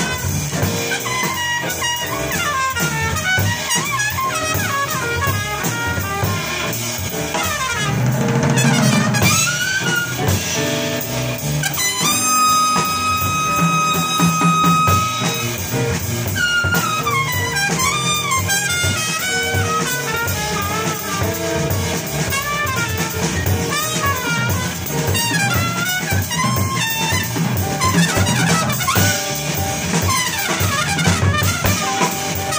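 Live jazz trio of trumpet, plucked upright bass and drum kit with cymbals. The trumpet plays moving melodic lines over the bass and drums, and holds one long note for about three seconds, about twelve seconds in.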